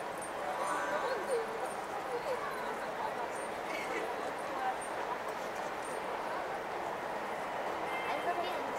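Steady hubbub of a crowd, many people talking at once with no single voice standing out.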